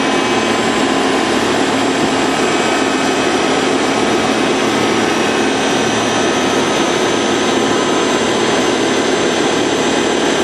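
1995 Takisawa TC-4 CNC lathe running: a loud, steady machine noise with several steady high-pitched whines over it.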